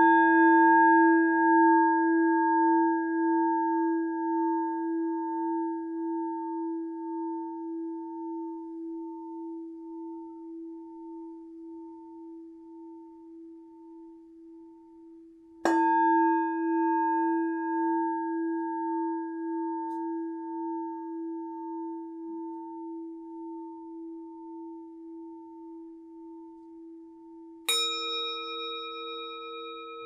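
Hammered brass Tibetan singing bowl ringing after being struck, a low wavering hum with a few higher overtones that die away slowly. It is struck again about halfway through. Near the end a higher-pitched bowl is struck.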